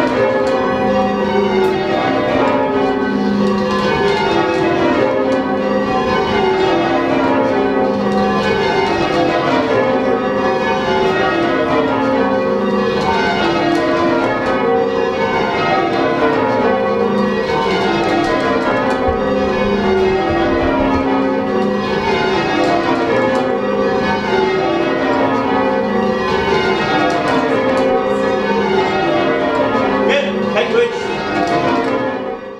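A ring of church tower bells being change rung, each row striking in quick succession from high to low in an even rhythm.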